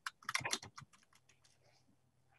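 Computer keyboard typing, a quick run of keystrokes in the first second that then dies down to a few faint clicks, heard over a video-call microphone.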